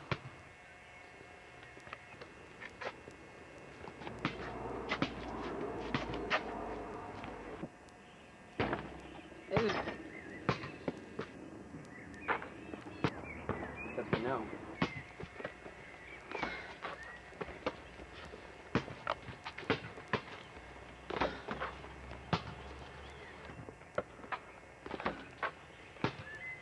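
A basketball bouncing and hitting a garden hoop's backboard and rim: a string of sharp, irregularly spaced thuds, with indistinct voices between them.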